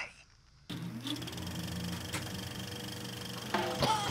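Reel-to-reel film projector switched on just under a second in, its motor whirring up to speed with a rising tone, then running with a steady, rapid clatter as film feeds through the gate. Other sounds come in near the end, leading into music.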